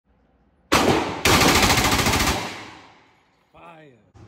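Thompson submachine gun (tommy gun, .45 ACP) firing full-auto in two bursts, a short one and then a longer one of rapid shots. Each burst echoes around the indoor range booth and fades away over about a second.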